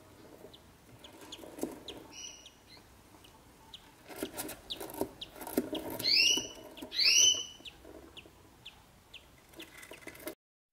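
Budgies in a nest box calling: a string of short, faint, high peeps with three louder, longer calls about two, six and seven seconds in, over soft rustling and scuffing in the nest box.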